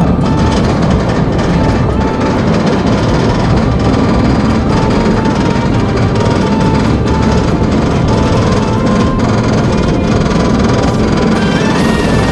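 Background music with a melody of held notes that step from one pitch to the next over a steady, dense bed of sound.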